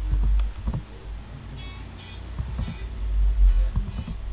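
Computer keyboard keys and mouse clicks tapping at irregular intervals, over a low rumble that swells near the start and again about three seconds in.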